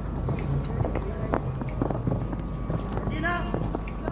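Hoofbeats of a show-jumping horse cantering on a sand arena, irregular dull thuds over a steady low background hum. A person's voice is heard briefly about three seconds in.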